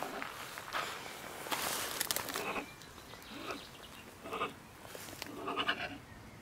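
A stone marten (beech marten) giving a string of short, harsh scolding calls about a second apart, with a longer, hissing outburst about one and a half seconds in. These are the agitated calls of a marten that feels disturbed by the person near its den in the woodpile.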